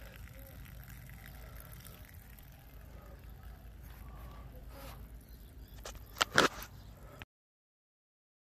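A thin stream of water trickling faintly onto grass from a hole punched in a ute's floor pan, draining the flooded cab floor. About six seconds in come two sharp knocks, louder than anything else.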